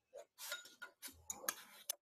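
Light, irregular ticks and taps of drafting tools being handled on paper: a steel ruler is moved and set down and a mechanical lead holder is picked up. The sharpest clicks come past the middle and just before the end.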